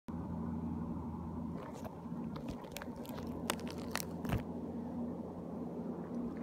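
Crackling clicks and crunches from a handheld phone being moved, scattered through the middle, over a steady low hum.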